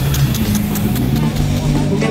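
Turf sprinklers spraying water across a football pitch: a steady hiss of spray with faint regular ticks from the rotating heads. Under it runs a louder steady low hum that shifts pitch a few times.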